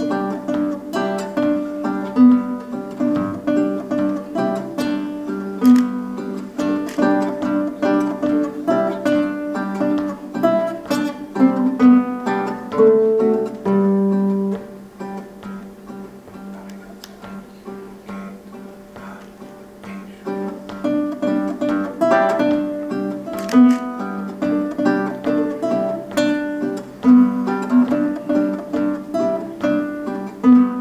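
Two nylon-string classical guitars playing a duet, plucked notes in a steady rhythm. The playing turns softer about halfway through and grows louder again a few seconds later.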